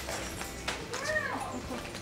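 A single short high-pitched call that rises and falls, about a second in, over soft background music.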